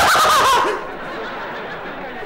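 A man's theatrical villain laugh, pitched and bending, that breaks off less than a second in. A quieter steady background noise follows.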